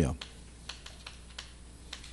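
Chalk writing on a blackboard: a handful of light, irregular taps and short strokes as the letters are written.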